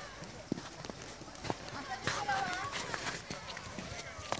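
Background voices of people, with one high voice calling out about two seconds in, over scattered sharp clicks.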